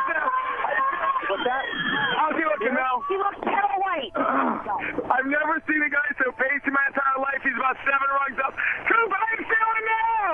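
Men's voices talking and calling out over one another, heard through a narrow-band radio broadcast that sounds like a phone line.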